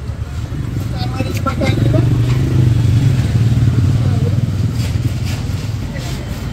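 A motor vehicle's engine running close by in street traffic, growing louder around the middle and easing off as it passes, under faint background voices.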